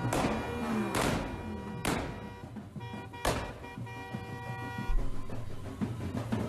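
Four sharp celebratory bangs, the first three about a second apart and the last after a longer gap, over music with long held notes in the middle.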